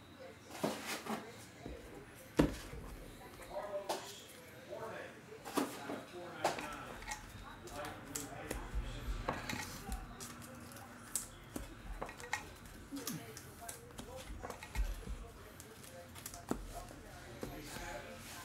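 Baseball trading cards handled by hand: a run of light clicks and slaps as cards are flipped through and set down, the sharpest click about two and a half seconds in.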